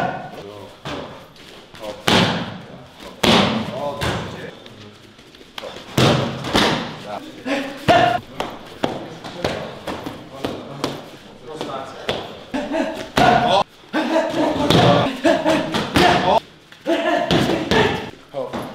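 Gloved punches landing on focus mitts in quick, irregular combinations: sharp smacks, often two or three close together, with voices between the strikes.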